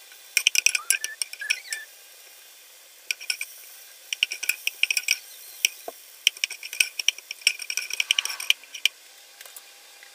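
Butter sizzling as it melts and foams in a hot pot, with fast irregular crackles and pops over a faint hiss; the crackling eases briefly about two seconds in, then comes back denser.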